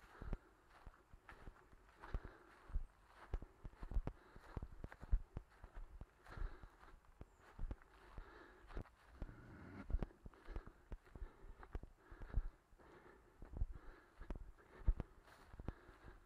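Footsteps of a person walking on frosty grass at a steady pace, about two steps a second.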